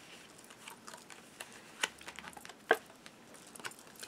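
Cards being handled and laid down on a cloth-covered spread: soft taps and rustles, with two sharper clicks, one just under two seconds in and one near three seconds in.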